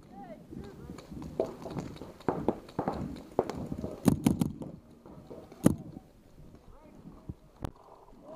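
Paintball markers firing: a quick burst of three sharp shots about four seconds in, then single shots about a second and a half later and near the end, with shouted voices around them.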